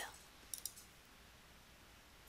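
A computer mouse button clicking: two faint clicks in quick succession about half a second in.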